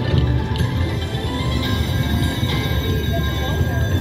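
Aruze Jie Jie Gao Sheng video slot machine playing its free-games bonus music and reel-spin sounds, over casino background chatter.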